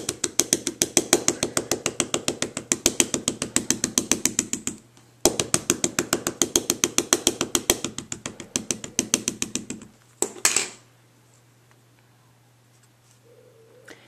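An ink pad tapped lightly and rapidly against a stamp, several taps a second, to spread the ink evenly. The tapping runs in two bursts with a brief break about five seconds in, stops about ten seconds in, and is followed by one louder knock.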